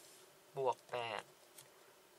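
A felt-tip marker writes on paper with a faint scratching, while a short spoken phrase comes about half a second in.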